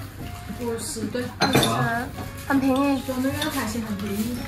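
Tableware clatter at a meal: china bowls, plates and spoons clinking, with one sharp clink about one and a half seconds in, under people talking at the table.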